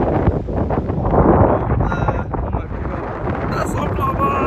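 Wind buffeting the microphone: a loud, rough rumble that swells to a gust about a second in.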